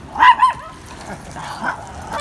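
Dog giving two quick, high-pitched barks close together near the start, followed by a couple of fainter ones.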